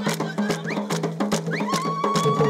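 Traditional drumming: a large hand drum beaten in a quick, steady rhythm, with short rising high-pitched calls over the beat. A long, held high note comes in near the end.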